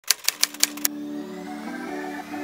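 Five typewriter keystroke clicks in quick succession, a sound effect for the title being typed on, followed about a second in by soft music with held notes.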